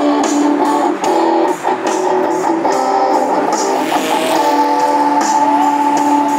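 Electric guitar music through PA speakers over a steady backing drum beat, with chords strummed and then a long chord left ringing through the second half.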